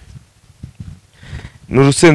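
A short pause in a man's talk, filled only by faint low rumble and a few soft knocks. He starts speaking again near the end.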